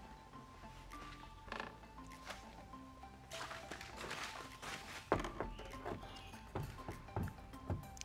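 Faint background music, with a run of light knocks and thunks from about five seconds in as a large sliding window's frame is set into the cut opening in a van's sheet-metal door.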